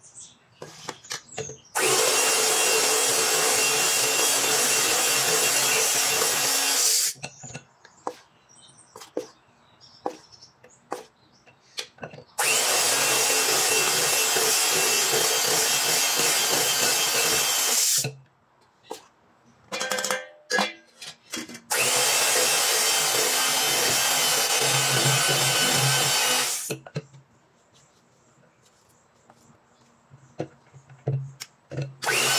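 Panasonic electric hand mixer beating flour into cake batter, running in three bursts of about five seconds each with a steady motor whine, as the flour is added a little at a time. Quieter knocks and scrapes fill the gaps between bursts.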